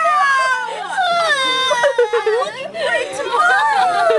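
A girl's high, wordless voice: a long wailing cry that falls steadily in pitch over about two seconds, then more wavering up-and-down vocalizing.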